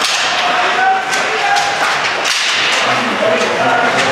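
Live ice hockey play: skates scraping the ice and sticks and puck striking in a string of sharp cracks, over steady arena noise with brief shouts.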